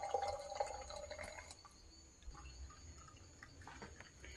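Liquid poured from a jug into a glass jar, a faint filling trickle that thins out after about a second and a half.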